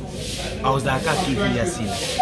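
A man talking, with a short hiss near the start.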